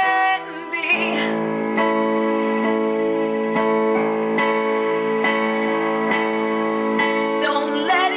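Electronic keyboard in a piano voice playing a slow ballad, sustained chords restruck at an even, unhurried pace. A held sung note ends about half a second in, and singing comes back near the end.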